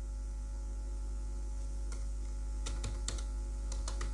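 Computer keyboard keystrokes as numbers are typed, a handful of short clicks mostly in the second half, over a steady low electrical hum.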